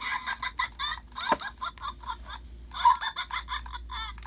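Electronic Kowakian monkey-lizard toy in the Salacious Crumb style cackling and chattering through its small speaker, in quick bursts with a short pause about two seconds in.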